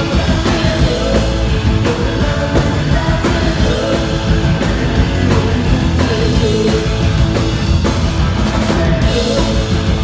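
A live punk rock band playing loud and steady, with distorted electric guitars, bass guitar and a drum kit.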